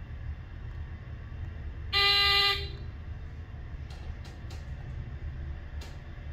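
An elevator's electronic signal tone sounding once, a steady beep held for about half a second, over a steady low hum. A few faint clicks follow near the end.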